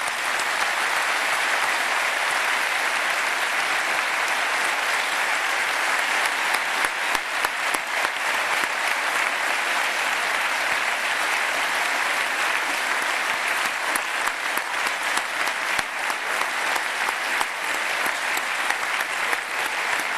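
An audience in a lecture hall applauding steadily after a talk ends, a dense clapping that starts suddenly and keeps up without a break.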